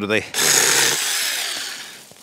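Seesii 6-inch cordless electric mini chainsaw running and cutting through a small branch, then dying away over about a second.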